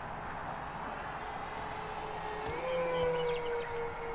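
Twin electric motors and propellers of a Nexa A-26 Invader RC model plane in flight: a steady whine that rises in pitch about two and a half seconds in, gets louder, then slowly sinks, over a constant hiss.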